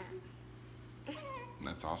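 A young child's short, high-pitched vocal sound that slides down in pitch, about a second in.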